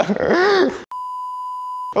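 A man laughing and talking, cut off a little under a second in by a steady high-pitched censor bleep that lasts about a second and stops suddenly.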